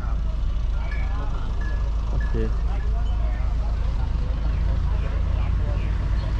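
Several people talking in the background over a steady low rumble, with a man saying "okay" about two seconds in.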